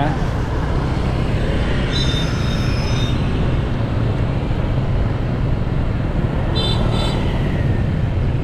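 Steady low rumble of a scooter ride through town traffic: the bike's small engine, tyres and wind, with other motorbikes and cars around. A thin high tone sounds for about a second, about two seconds in, and a few short high beeps come near the end.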